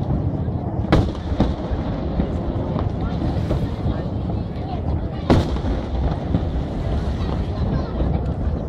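Aerial firework shells bursting, heard from a distance: sharp bangs about a second in and again just after, and the loudest about five seconds in, over continuous low rumbling.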